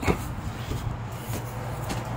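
A few footsteps on wooden deck boards, faint knocks about half a second apart, over a steady low hum.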